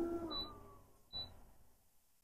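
HTVRont Auto heat press closing on its own: a faint steady mechanical hum that dips in pitch and stops within the first half-second, then a short high beep just over a second in as the press timer starts.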